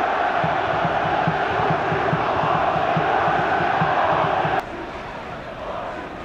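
Football stadium crowd chanting loudly over a steady low beat of about three a second. About four and a half seconds in, the sound drops abruptly to a quieter crowd background.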